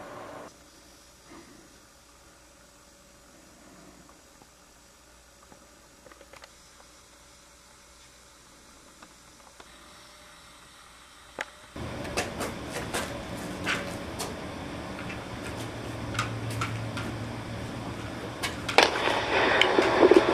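Quiet room tone with a faint steady hum. About twelve seconds in it gives way to louder outdoor background noise with a low rumble and a few scattered clicks.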